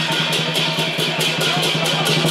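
Lion dance percussion: a big drum and clashing hand cymbals played in a fast, even beat, the cymbals ringing on between strokes.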